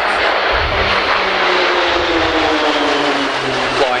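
A formation of Pilatus PC-9 single-engine turboprop trainers flying past overhead: a loud engine and propeller drone whose pitch falls steadily as the aircraft go by.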